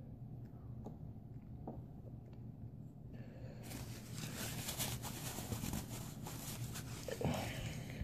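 Faint handling noise: soft rustling and small clicks of hands and pliers, strongest in the middle, over a low steady hum.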